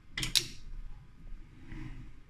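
A Robotiq 2-finger gripper on a cobot arm setting a small metal bearing ring down into a metal fixture and releasing it: two sharp metallic clicks close together about a quarter second in, then a softer mechanical sound from the gripper and arm moving near the end.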